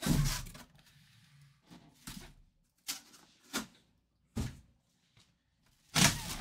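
Cardboard helmet box being handled and the clear plastic bag around a full-size football helmet rustling: a louder knock of the box at the start, then a few short, separate rustles with quiet gaps between them.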